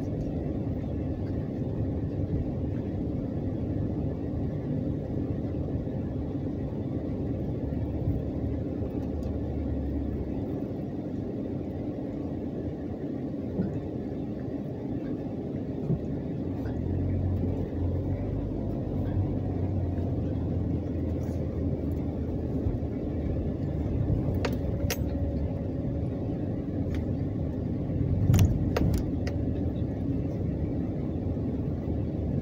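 Car cabin noise while driving slowly: a steady low engine and road rumble, with a few light clicks near the end.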